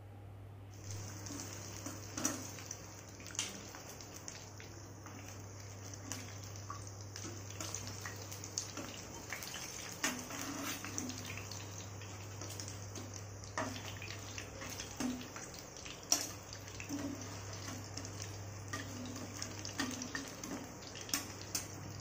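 Masala-coated fish slices shallow-frying in oil in a nonstick pan: a steady sizzle that starts about a second in, with scattered crackles and pops, over a low steady hum.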